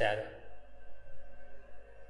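A man's voice finishes a word, then a faint steady hum of several held tones fills the pause.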